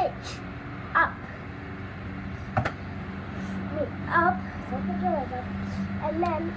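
A child's voice in short vocal sounds, with one sharp knock a little before the middle, over a steady low hum.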